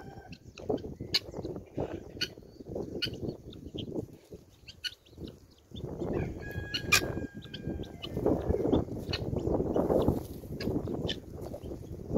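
Helmeted guinea fowl foraging, with scattered short clicking calls and a brief pitched call about six to seven seconds in.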